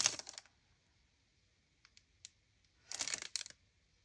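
Clear plastic sticker packet being handled: a few faint light ticks about two seconds in, then a short crinkly rustle of plastic near the end.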